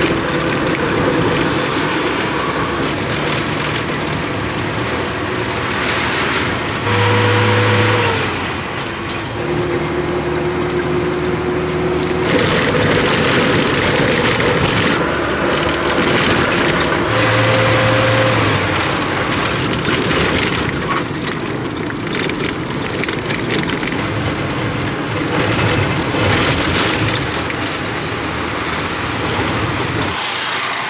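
Engine and road noise heard from inside a moving car, loud and steady, with the engine note shifting in pitch a few times.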